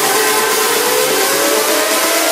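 Electronic trance music in a build-up: a synth sweep rises steadily in pitch over a wash of white noise, with the bass and kick drum dropped out.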